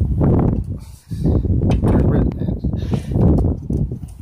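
Quarter-inch ratchet with an 8 mm socket clicking in short runs as a bolt on the air box is loosened, over a loud low rumble.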